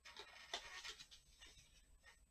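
Faint rustling and light scraping from handling a mini football helmet on its white cardboard box base as it is set down, a handful of soft strokes with the most distinct about half a second in.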